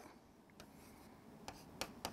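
Faint taps and light scratching of a stylus writing on an interactive touchscreen board: a few soft ticks, one about half a second in and two more near the end.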